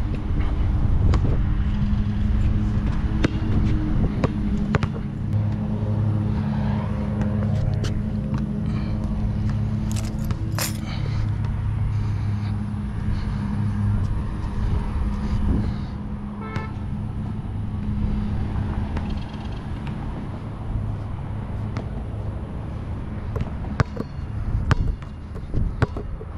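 Wind rumbling on the camera microphone over a steady low motor hum that fades somewhat after the middle, with a few scattered sharp clicks and knocks.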